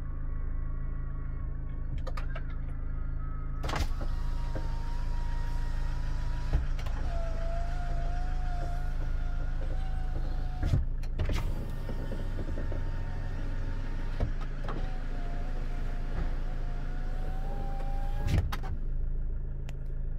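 Electric window motor in the door of a 2009 SsangYong Actyon Sports whining as the glass travels, in two runs: one of about six seconds starting some four seconds in, and a shorter one of about four seconds later on, each ending in a clunk as the glass stops. The engine idles steadily underneath.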